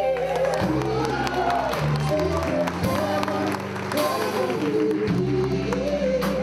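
Live band playing an upbeat song: electric guitar, keyboard and drums under several singers' voices, with a steady bass line and regular drum hits.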